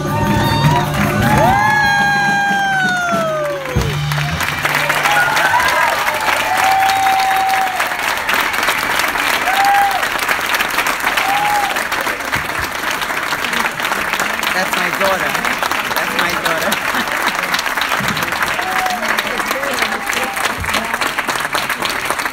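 A singer's last held note over the school band's final chord, the voice falling in pitch and stopping with the band about four seconds in. Then the audience applauds, with a few whoops and cheers.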